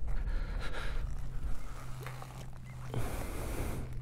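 A person breathing close to a helmet-mounted microphone over a low steady hum, with a louder breath-like hiss near the end.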